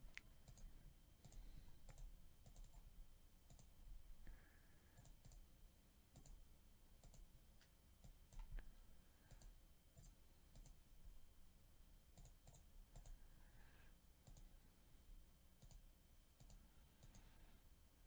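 Faint, scattered clicks of a computer mouse and keyboard at irregular intervals, over a faint steady high whine.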